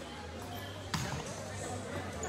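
A volleyball bouncing once on the court floor about a second in, a single sharp thud.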